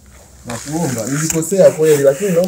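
A man's voice chanting a short repeated phrase in a rising and falling sing-song, starting about half a second in.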